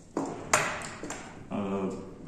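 A sharp metallic ping from a thin steel fretsaw blade about half a second in, ringing briefly, as the blade comes free of the saw frame's clamp.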